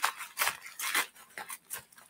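A few faint, short clicks or ticks, spaced irregularly, with no clear source.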